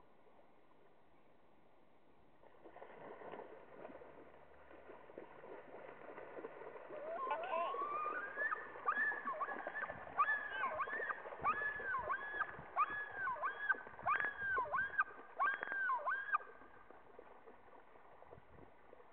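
Common loon splashing along the water surface, then calling: a long rising note followed by repeated wavering up-and-down phrases, about two a second, that stop abruptly near the end. The pattern is that of the male loon's yodel, its territorial call during a fight with a rival male.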